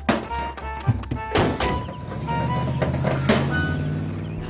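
Cartoon background music, punctuated by several sharp thuds, with a van engine running under it in the second half as the van drives off.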